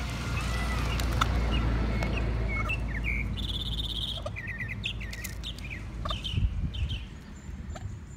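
Birds chirping: a few repeated arched calls early, then scattered short high peeps and a brief fast trill, over a steady low outdoor rumble. A few knocks and a sharp thump come about six and a half seconds in.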